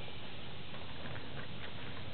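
Steady low background hiss with no distinct event.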